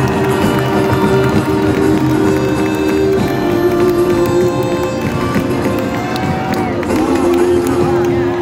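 Live music from a small acoustic band of acoustic guitars, accordion and clarinet, with long held notes, over arena crowd noise.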